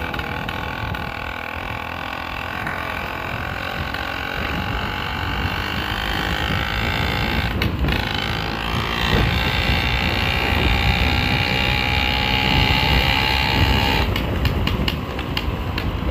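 Small 50cc engine running steadily while riding, a hum of even tones over a low rumble, growing louder about halfway through.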